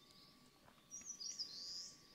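Faint bird chirps, a few short high calls in the second half.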